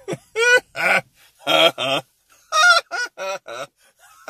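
A man laughing hard in a string of short, loud, high-pitched bursts, with a brief pause about two seconds in before the laughter picks up again.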